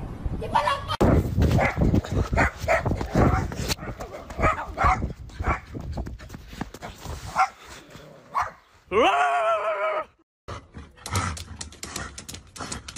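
Dogs barking: a run of short barks through the first few seconds, and a longer drawn-out call about nine seconds in that rises in pitch and then holds.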